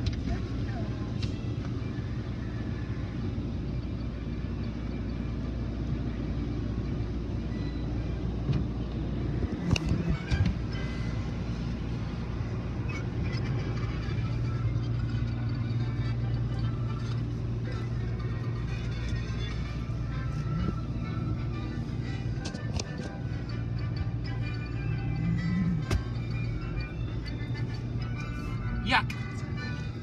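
Steady low rumble heard from inside a car rolling through an automatic car wash tunnel, with a few sharp knocks and music playing over it.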